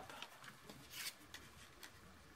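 Faint rustle of cardstock pieces being handled and laid together, with a soft sliding hiss about a second in and a few light ticks.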